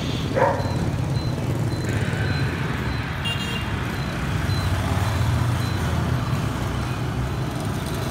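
Road traffic of small motorbikes and scooters passing, with a steady low engine rumble. A faint high beep repeats over the first few seconds, and a short high chirp comes about three seconds in.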